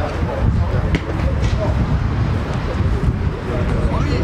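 Wind buffeting the microphone as a fluctuating low rumble, with faint distant voices.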